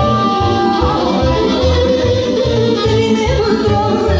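Live Romanian folk dance music, amplified, with a woman singing into a microphone over a band with accordion and a steady bass beat.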